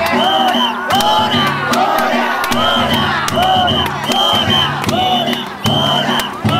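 Danjiri festival sound: a crowd of rope-pullers chanting in rhythm over the float's drum and gong music, with short high whistle blasts repeating about once a second and sharp percussive strikes.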